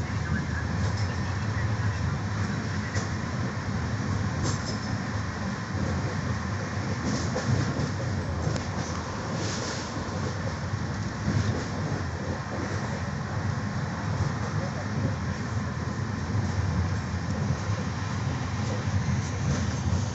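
Passenger train running at speed, heard from inside the coach: a steady low rumble of wheels on rail, with a few brief sharper rattles in the middle.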